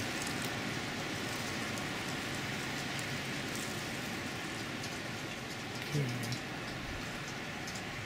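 Steady, even hiss of outdoor background noise, with a brief spoken word near the end.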